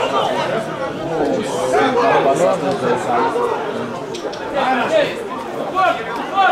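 Spectators chatting, several voices talking over one another without a break.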